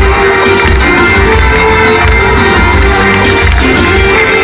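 Live Greek laïko band music played loud through a PA system, with a heavy bass beat and sustained instrument notes in an instrumental passage.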